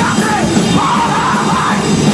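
Hardcore punk band playing live: loud, dense music with shouted vocals.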